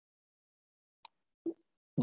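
Near silence, broken about a second in by a faint sharp click and, half a second later, a short soft low pop.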